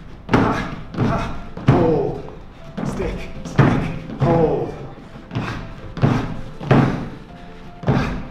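Feet landing on plastic aerobic step platforms and the floor during lateral step plyo jumps, a thud every second or less, with short voiced breaths between landings and background music throughout.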